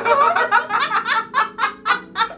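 A man and a woman laughing hard together, the laughter running in quick repeated bursts.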